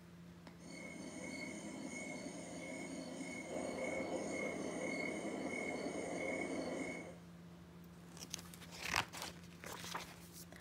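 A night-time sound effect of crickets chirping, a steady high trill over a rustling hiss, starts about half a second in and stops abruptly after about six seconds. Near the end, a paper page of a picture book is turned with a short rustle.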